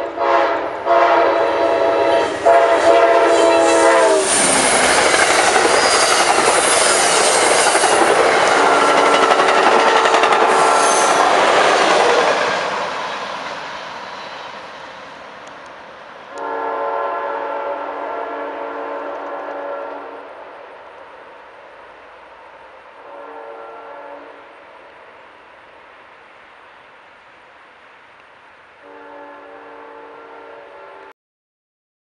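Amtrak passenger locomotive's multi-chime air horn sounding loud blasts as the train approaches, then the train passing close by with loud rolling wheel and rail noise that fades away. The horn sounds three more times, fainter and farther off.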